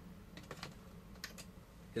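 A few faint, light clicks of plastic toy parts as a hand handles the Leon Kaiser robot figure, in two small groups about half a second and a second and a quarter in.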